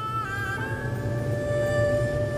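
Background music: a few sustained held notes over a low steady drone.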